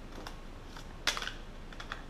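Buttons being pressed on a handheld calculator: a series of short plastic key clicks, loudest in a quick cluster about a second in.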